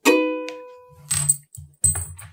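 A red ukulele with one chord strummed and left to ring, fading within about half a second. It is followed by two short clattering knocks, about a second in and just before the end.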